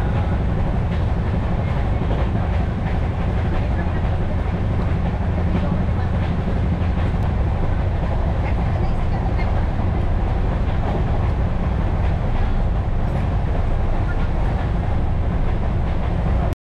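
Train running, heard from inside a passenger coach of the New Delhi–Indore Intercity Express: a steady, loud low rumble of wheels on rails with faint scattered clicks.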